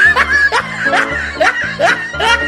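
A comic laughing sound effect, a string of short rising squeaky giggles about two a second, over background music with a steady beat.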